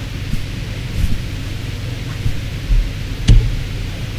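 Room tone in a pause: a steady low hum and hiss, with a low thump and then a single sharp click about three seconds in.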